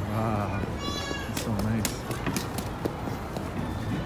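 Indistinct voices of people talking in a busy pedestrian street, with a few sharp clicks in the middle and steady street noise underneath.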